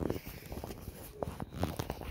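Handling noise from a Swedish M/1848 fascine knife in its leather-and-brass-fitted scabbard: a run of small clicks, scrapes and rustles as the knife is worked at to draw it out.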